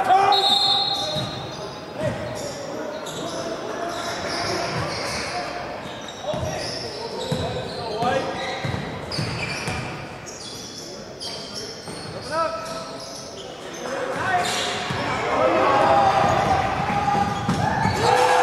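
A basketball being dribbled and bouncing on a hardwood gym floor in a large, echoing hall, among scattered shouts from players and spectators that grow louder near the end.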